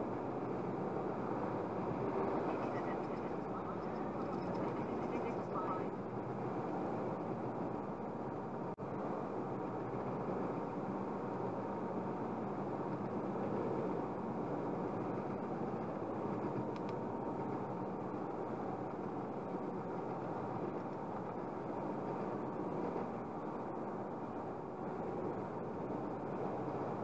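Steady road and tyre noise inside a car's cabin cruising at motorway speed, about 93 km/h.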